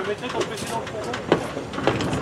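Passenger coaches of a heritage steam train rolling past, with a few sharp clicks of wheels over rail joints. People's voices are heard in the background.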